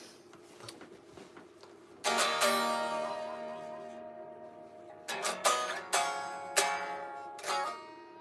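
Electric guitar played alone: a chord struck about two seconds in and left to ring out and fade, then several more chords picked in quick succession from about five seconds in.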